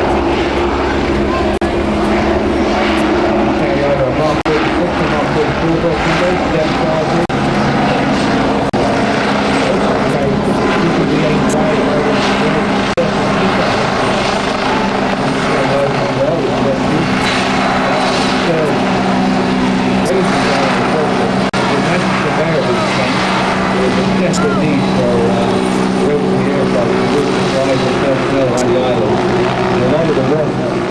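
Westland Wasp HAS1 helicopter, with its Rolls-Royce Nimbus turboshaft, flying past: a steady rotor and turbine sound whose pitch shifts partway through as it comes closer.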